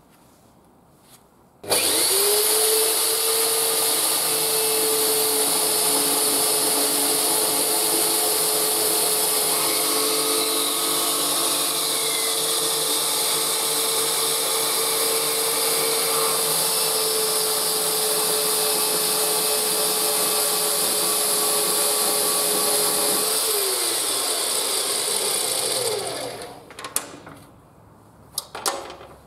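Parkside PMB 1100 A1 metal-cutting bandsaw, with its 1100 W motor, starting up about two seconds in and running with a steady whine while its blade cuts through square metal tube. Near the end the motor is switched off and winds down with a falling pitch, followed by a few clicks.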